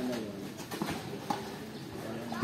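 Tennis ball struck during a rally: two sharp knocks about half a second apart.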